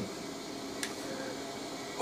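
Quiet room tone with a faint steady hiss and one light click a little under halfway through.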